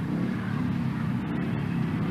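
Speedway bikes' single-cylinder engines running at the start line before a heat, a steady low drone.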